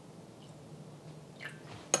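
Faint low room hum, then near the end a single sharp clink of a metal spoon against a small ceramic bowl as stirring of the soy-sauce mixture begins.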